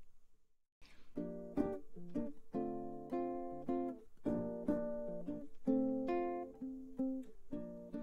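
Ukulele playing the introduction to a bossa nova, plucked chords in a rhythmic pattern, starting after a short silence about a second in.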